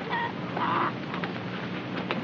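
Domestic hens clucking quietly, with a short call a little over half a second in.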